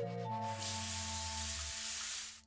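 Cartoon sound effect of a salon sink's hand-held spray nozzle spraying water onto a customer's head: a steady hiss that starts about half a second in, over background music.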